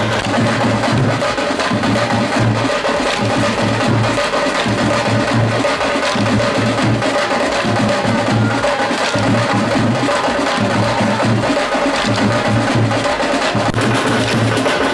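Live street band music, drums keeping a steady beat with wind instruments, and the sharp clicks of bamboo sticks struck together by stick dancers.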